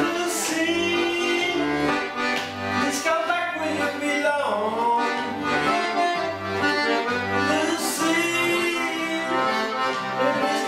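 Button accordion played with pulsing bass notes and sustained chords while a man sings along over it.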